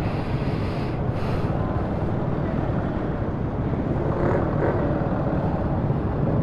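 Motorcycle engine running as the bike moves off and rolls slowly at low speed, a steady low rumble close to the microphone.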